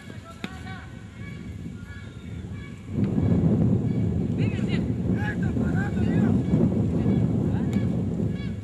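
Wind buffeting the camcorder's microphone: a loud, uneven low rumble that sets in about three seconds in and drops away near the end. Distant voices call out over it.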